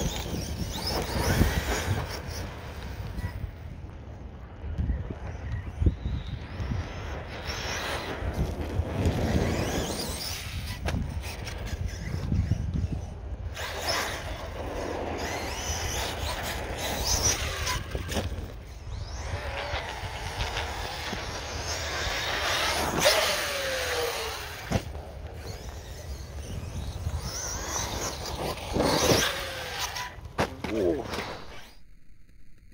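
Arrma Outcast 6S electric RC monster truck being driven hard on gravel and wet tarmac: its brushless motor whines up and down as it accelerates and slows, with tyre noise. There is a short falling whine about two-thirds of the way through.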